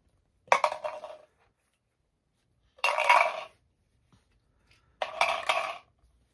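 Small hard toy pieces dropped into a small jar, clinking and rattling against it in three short bursts about two seconds apart.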